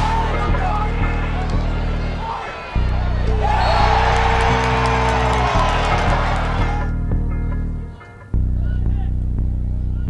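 Background music with a steady bass line that drops out briefly twice, about two and a half and eight seconds in. In the middle, crowd cheering rises over the music for a few seconds.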